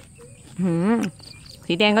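A steady, high-pitched insect buzz, like crickets, running on without a break in the garden. A woman's voice comes in over it about half a second in and again near the end.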